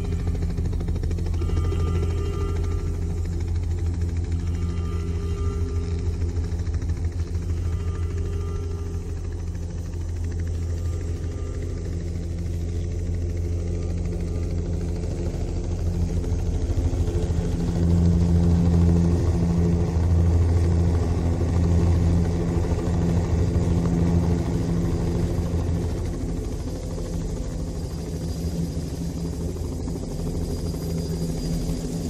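Helicopter sound effect played through a concert PA: a steady low rotor drone that swells louder past the middle, with a faint tone repeating about every three seconds in the first half.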